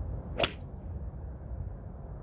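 A 4 iron swung down through impact, striking a golf ball off a turf mat: one sharp swish and crack about half a second in.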